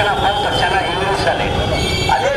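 A man speaking loudly into a handheld microphone, his voice amplified, over a steady high ringing and a low rumble.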